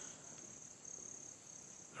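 Faint, steady high-pitched insect trilling over low hiss in a near-quiet pause.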